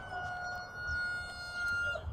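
A steady high whine with a fainter lower tone beneath it, sinking slightly in pitch: the spinning wheels of a JUGS football passing machine set for 40 mph throws.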